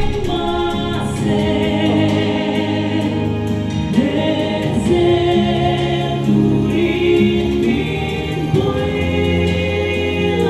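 A woman singing a song into a handheld microphone, amplified through a PA, over an instrumental accompaniment of steady bass notes and chords.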